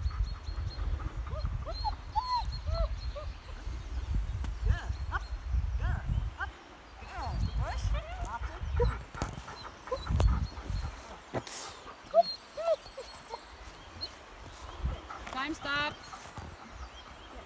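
A dog whining and yipping in short rising-and-falling calls, with wind rumbling on the microphone; a longer rising whine comes near the end.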